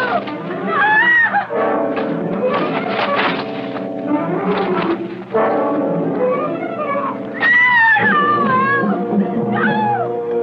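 Orchestral film score led by brass, with sustained chords and percussive hits in the first few seconds. Curving high lines rise and fall about a second in and again from about seven and a half seconds.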